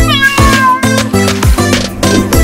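One cat meow, falling in pitch and lasting under a second, right at the start, over loud upbeat music with a steady beat.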